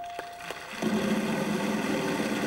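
A game-show prize wheel spinning, clattering as its pegs run past the pointer. A contestant's long drawn-out shout of "Big…" starts about a second in. A chime tone trails off in the first second.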